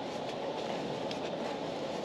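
Steady background rumble with faint, soft rustling of fabric as a baby's hanbok trousers and hat are pulled on.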